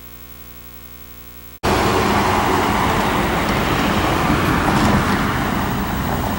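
A faint steady electronic hum, then about a second and a half in a sudden switch to loud, steady road-traffic noise.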